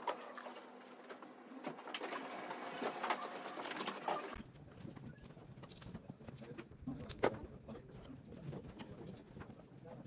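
A few light clicks and taps of small wooden parts being handled against a wooden box, over a low room background that changes abruptly about four seconds in.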